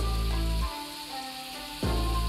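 Pork and tofu frying in oil in an electric skillet, an even sizzling hiss, as chopped garlic chives are dropped in. Background music plays over it, its bass dropping away about halfway through.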